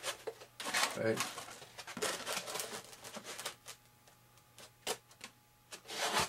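A foam RC wing being handled on a workbench: a cluster of light clicks and rubs in the middle, then a few single clicks, after a short spoken word.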